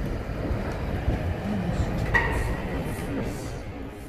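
Rumble of a London Underground train running through a nearby tunnel, with faint voices over it. A brief high squeal about halfway through, then the sound fades near the end.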